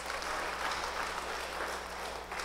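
Congregation applauding, a steady clatter of clapping that thins out near the end.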